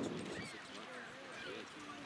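Horse cantering on an arena's dirt footing, its hoofbeats faint, with distant voices behind.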